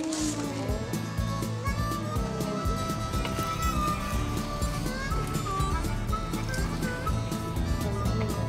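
Background music with a steady beat and a held melody line.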